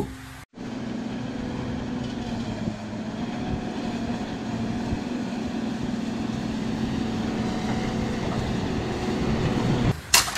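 Wheel loader's diesel engine running steadily under load as its front plow blade pushes through deep snow, starting after a short break about half a second in, with a steady low hum.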